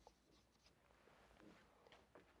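Near silence with faint scratching of a marker writing on a whiteboard.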